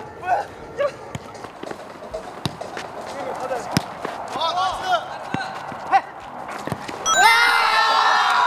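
Players shouting and calling to each other during a futsal game, with scattered sharp thuds of the ball being kicked. Near the end a loud burst of many voices yelling and cheering breaks out as the game-ending goal goes in.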